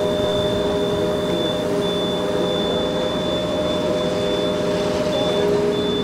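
A Magirus fire-engine aerial ladder running its engine and hydraulic drive as it lowers the rescue basket, a steady mechanical drone with a steady whine over it.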